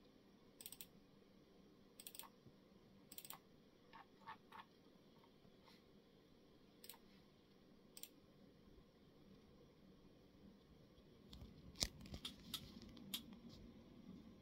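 Near silence: room tone with faint, scattered clicks and light scratches. Near the end a few louder clicks come over a low rumble.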